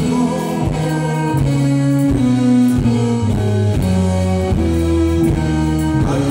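Male vocalist singing live into a microphone with a country band, electric guitar prominent, amplified through a PA.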